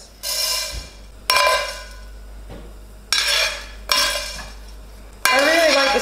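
Whole Tellicherry black peppercorns tipped into a dry stainless steel frying pan: four sudden clattering rattles, each leaving the metal pan ringing briefly.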